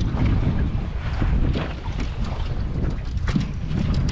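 Wind rumbling and buffeting on the microphone in a small open boat on choppy water, with a few faint knocks.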